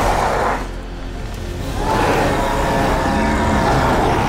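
A young woman's werewolf roar that breaks off about half a second in, followed by film score music with long held notes.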